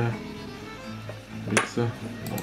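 Light clinks of old copper kopeck coins being handled and picked up off a tabletop, with one sharper clink about one and a half seconds in.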